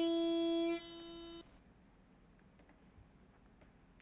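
A man's voice holding one sung "eee" note at a dead-steady pitch, mimicking hard auto-tune pitch correction. It drops in level partway through and stops about a second and a half in; near silence follows.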